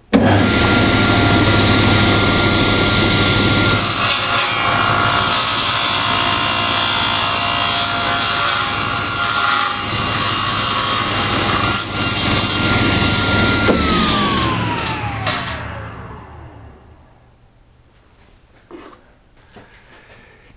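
Tablesaw switched on and running with a steady whine. From about four seconds in, the blade cuts through the end of the jig's arm for about ten seconds, trimming it to zero. The saw is then switched off, and the whine falls as the blade spins down, dying away about three seconds later.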